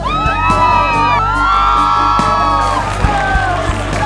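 Background music with a steady beat, with a group of young people whooping and cheering loudly over it, dying away near the end.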